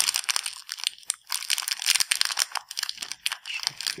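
Small clear plastic accessory bag crinkling and crackling in an irregular run as fingers handle it and work it open.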